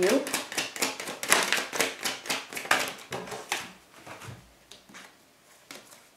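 Tarot cards being shuffled by hand: a quick run of card slaps and flicks for about three and a half seconds, then a few scattered clicks.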